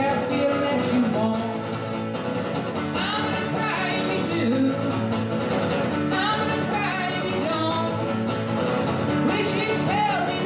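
Steadily strummed acoustic guitar with a man singing over it, a live solo performance of a country-folk song.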